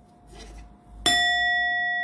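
A metal bell is struck once about a second in and rings on with a steady, slowly fading tone.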